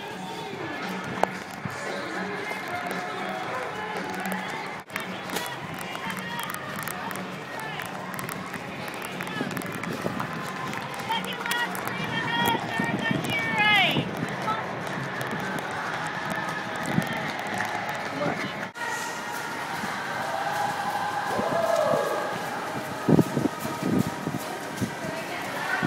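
Music with a singing voice, along with the footfalls of people jogging and some handling knocks on the camera.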